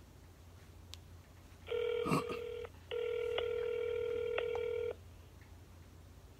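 Ringback tone of an outgoing call heard through a smartphone's loudspeaker: a short ring about two seconds in, then, after a brief break, a steady two-second ring. A knock from the phone being handled comes during the first ring.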